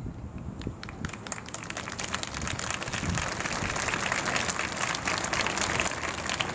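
Large crowd applauding: a few scattered claps about half a second in, thickening within a second or two into steady, sustained applause.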